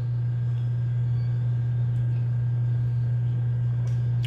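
A steady low hum that does not change, with no other distinct sound.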